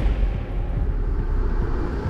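A loud, continuous low rumble from the sound effects of a fight scene, with no clear single event standing out.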